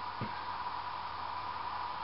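Steady hiss of room tone, with no distinct event.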